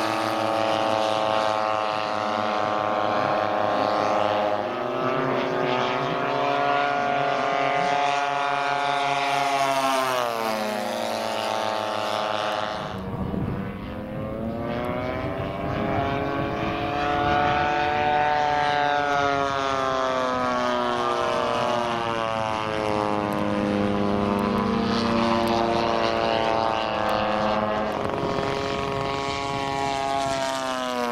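Engines of scale radio-controlled model aircraft flying by, more than one at a time. Their propeller notes repeatedly rise and fall in pitch as the models pass, with a deep swing down and back up about halfway through.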